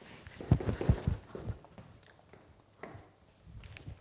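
A few quick footsteps on a hard floor, loudest about half a second to a second in, then a couple of faint scuffs.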